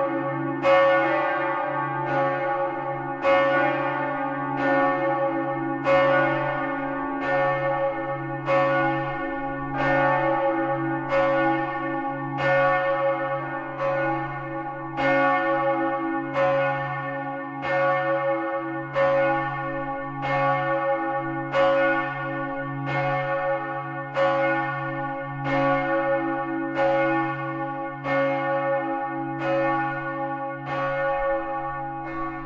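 Large bronze church bell swung for ringing, heard close up in the belfry: its clapper strikes about once every 1.3 seconds, each stroke ringing on over a steady deep hum.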